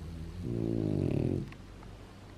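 French bulldog lying down and making one low, drawn-out grunting breath sound that ends about a second and a half in.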